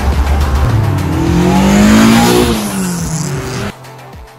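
A car engine revs up and then falls back over music with a heavy bass beat. Both cut off sharply just before the end, leaving faint music.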